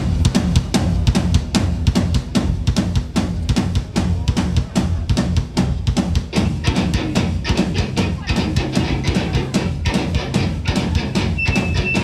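Live rock band playing a fast, driving beat: kick drum and snare hitting about five times a second over guitar and bass.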